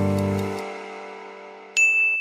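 Background music chord fading away, then a single bright, high chime ding near the end: a quiz sound effect marking the reveal of the correct answer.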